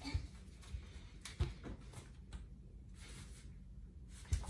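Quiet room with a few faint knocks and shuffles of people shifting their feet on a wooden floor, the sharpest knock about a second and a half in.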